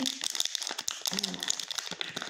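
Paper bag and plastic packaging rustling and crinkling as they are handled, with a short murmur of voice about a second in.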